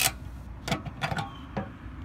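Metal fuel-tank cap of a StormCat two-stroke portable generator being unscrewed and lifted off, giving several short clicks and scrapes.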